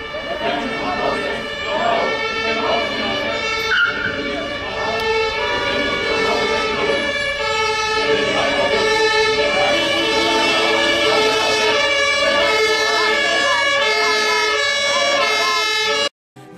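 Several voices holding long, overlapping sustained notes, mixed with an emergency-vehicle siren. The sound cuts off abruptly at the end.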